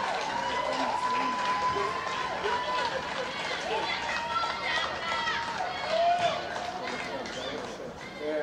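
Voices on a football pitch shouting and calling out in celebration of a goal, including a few long, drawn-out high calls.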